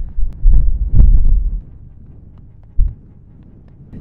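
Strong wind buffeting the camera microphone in low gusts, heaviest over the first second and a half, then easing off with one short blast near three seconds in.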